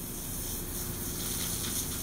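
Steady low outdoor background noise with a faint steady low hum, and no distinct event.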